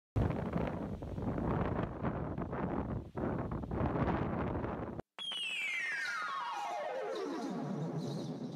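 A rushing noise, like wind on a microphone, cuts off abruptly about five seconds in. Then comes a synthesizer sweep: several tones sliding together steadily from high to low over about three seconds, opening the song.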